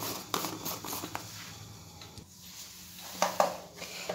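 Faint scattered clicks and light knocks of kitchen things being handled, with a couple of louder clicks near the end as a mixing bowl is gripped and lifted off a digital kitchen scale.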